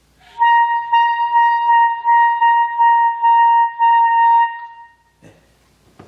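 Alto saxophone playing a single high note, held at one steady pitch and re-attacked about seven times in a row, stopping about five seconds in. It is played with the instrument tilted up so that more of the lower lip is on the mouthpiece, an angle used to find the high register.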